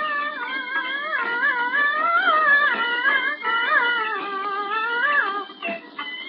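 Beijing opera aria from an old record: a single high voice sings one long, wavering melismatic phrase over the accompaniment, with the thin, narrow sound of an early recording. The phrase breaks off shortly before the end, and the instruments carry on.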